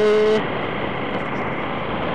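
Motorcycle horn beeping once, a single steady tone about half a second long, over the steady wind and road noise of the moving motorcycle.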